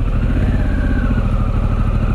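Motorcycle engine running steadily at low speed.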